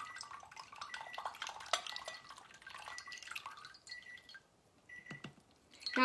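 Tea concentrate trickling and dripping from a glass tea press into a glass teacup, thinning to a few last drips near the end. A faint short high beep repeats about once a second.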